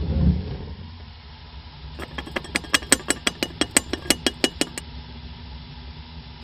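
Portable butane gas stove: a click as the ignition knob turns and the burner lights with a brief surge, then the flame burns with a steady low rumble and hiss. From about two seconds in comes a run of sharp ticks, about five a second, for nearly three seconds, and another click near the end.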